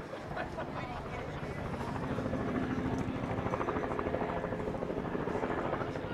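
A steady motor drone with a fast, regular pulsing that builds from about two seconds in, under faint voices.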